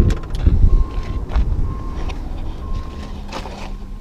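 The latch of a 1970 Volkswagen Beetle's door clicks several times as the door is pulled open, then handling thumps follow over a low rumble of wind on the microphone. A faint beep repeats about once a second throughout.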